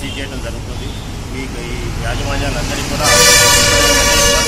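Vehicle horn giving one long, loud, steady blast starting about three seconds in, over a low rumble of passing road traffic.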